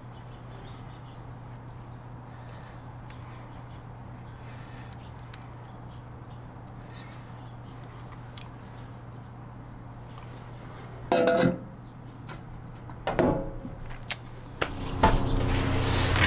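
Faint handling of a stainless steel sink drain strainer as plumber's putty is pressed around its flange, over a steady low hum. Late on the metal strainer clanks twice against the stainless steel sink bowl as it is set into the drain hole, the first clank briefly ringing.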